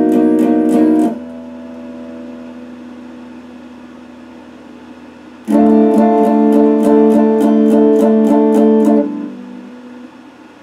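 Electric guitar strummed with a pick in a quick rhythm of about four strokes a second, a chord left to ring and fade for several seconds in between. The strumming stops about a second in, starts again about halfway through, and stops again about a second before the end, where the chord fades.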